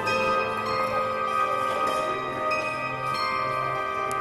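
Background music of held, bell-like tones ringing steadily over one another.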